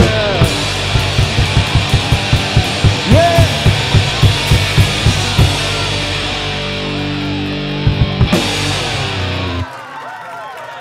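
Rock band with electric guitars and a drum kit playing the last bars of a song. Steady drum hits run through the first half, then a held chord rings out with a few final hits and stops suddenly near the end.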